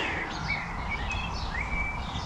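Small birds chirping in the background: a few short, high calls, the last rising into a held note, over a low steady outdoor background noise.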